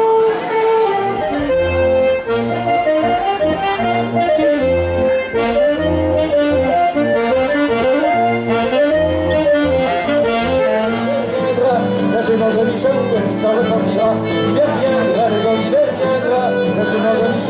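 Breton folk dance music led by a button accordion, playing a lively melody over low bass notes that pulse on the beat; the sound changes about twelve seconds in.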